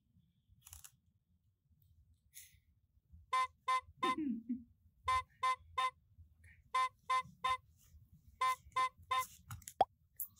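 Short toots all on the same pitch: two, then three quick groups of three, with a brief falling squeak after the first pair and a sharp click near the end.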